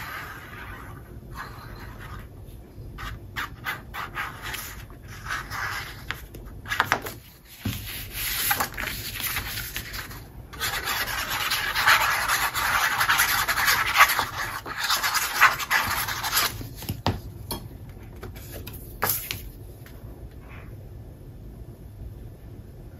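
Tip of a liquid-glue bottle rubbing and scraping across a sheet of patterned cardstock as glue is spread over it, with paper rustling and light taps as the sheets are handled. The scraping is densest and loudest in the middle stretch, then gives way to softer rubbing of hands smoothing paper down near the end.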